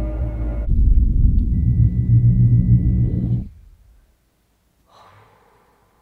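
Film soundtrack: a loud, deep rumble with a faint steady high tone through its middle, cutting off suddenly about three and a half seconds in, then near silence with one brief faint sound about five seconds in.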